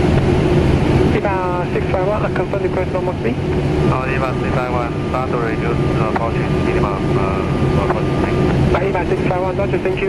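Steady flight-deck noise of a Boeing 777-300ER on final approach, a continuous airflow-and-engine hum with a constant low tone running under it. From about a second in, a voice talks over the hum.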